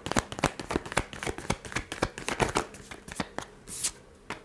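A tarot deck being hand-shuffled, with rapid, irregular light clicks and taps of cards slipping and slapping against each other. A short swish comes near the end.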